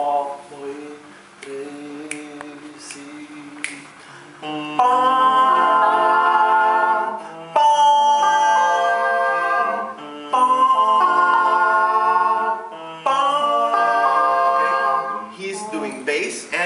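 Five-man a cappella group singing a bolero, with voices imitating a brass section through cupped hands. The first few seconds are soft, then loud held chords come in phrases of about three seconds.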